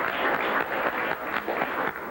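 Audience applauding: many irregular hand claps.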